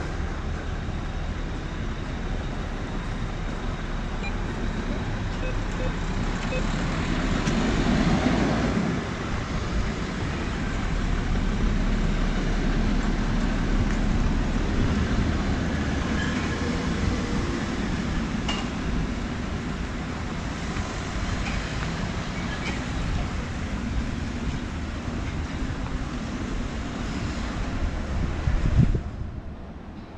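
Street traffic: cars driving past on the road beside the pavement, one passing louder about eight seconds in. The sound drops off suddenly near the end.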